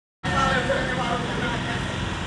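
Indistinct talking over the steady low rumble of a vehicle's engine and road noise, heard from inside the moving vehicle.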